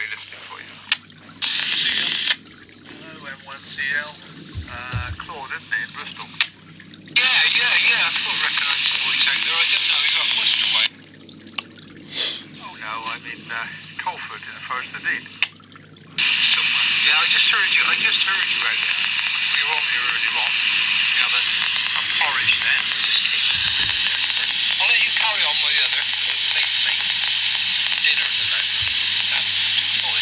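Received 2-metre FM signal from a transceiver's loudspeaker: hiss limited to the voice band that cuts in and out abruptly as the squelch opens and closes, with a weak, garbled voice buried in the noise. A steady low hum runs underneath.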